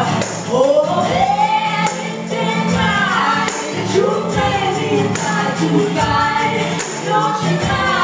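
Live band music: several voices singing together in harmony over a tambourine and strummed strings.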